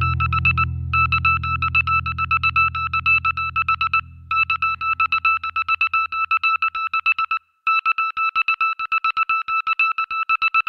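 The closing part of a blues track: a low guitar chord rings and dies away under a high electronic beeping tone that pulses rapidly, in three runs of about three seconds with short breaks between them. The chord is gone about seven seconds in and the beeping carries on alone.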